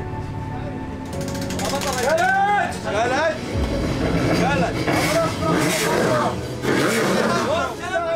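Several people talking at once over background music.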